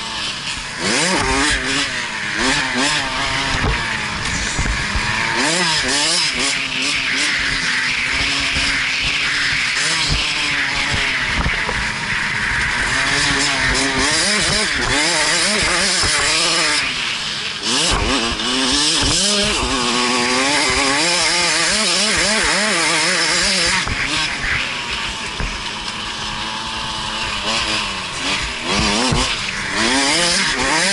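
KTM 65SX's small single-cylinder two-stroke engine revving hard and dropping back over and over as the bike is ridden around a motocross track, its pitch climbing and falling with each run and shift. A steady rush of wind noise on the helmet-mounted microphone runs under it.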